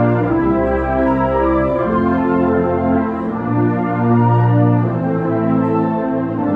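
Symphonic wind band playing full, held chords, with brass and a strong low bass line. The chords change about every second.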